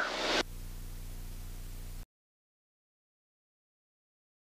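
Faint, steady in-flight hum of the light aircraft's engine and cabin, the end of a spoken word fading out at the start. It cuts off abruptly about halfway through, leaving silence.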